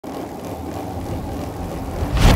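A steady low rumbling hum.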